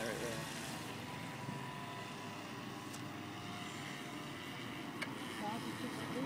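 Two RC model boats running across a pond, their motors a faint steady whine at a distance over a hiss of outdoor noise, with a couple of tiny clicks.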